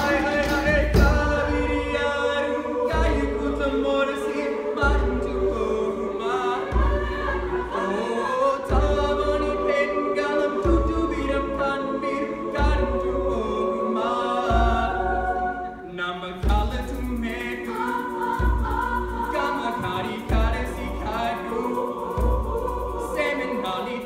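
A mixed high school choir singing a gospel-style song in parts, led by a young male soloist at a microphone, over a low drum beat that falls about once every two seconds.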